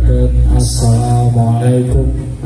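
A man's voice chanting in held, gliding phrases into a microphone, amplified through a PA loudspeaker, with a steady deep drone underneath.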